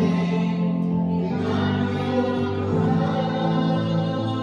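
A man singing a worship song to Yamaha electronic keyboard accompaniment, with long held notes over sustained chords.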